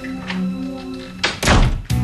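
Soft background music with sustained notes, then about a second and a half in, a door shuts with a loud thunk.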